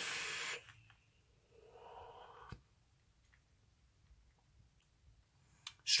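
Steady hiss of a draw on a vape, ending about half a second in, followed about two seconds in by a fainter breathy exhale and a single click.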